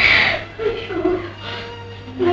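A woman crying out and sobbing: a loud cry at the start, then short wavering wails.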